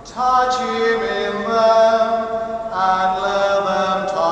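Slow devotional chant sung with long held notes. A new phrase begins just after the start and moves through several sustained pitches.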